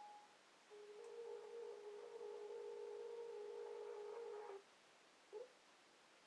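Faint telephone hold music heard over a phone line: a short note, then one long, steady synthesised note held for almost four seconds that steps up in pitch once near its start, and a brief falling tone near the end.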